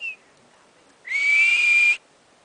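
Hoary marmot whistling: a short whistle at the start, then a long, loud whistle about a second in that rises slightly and holds one steady note.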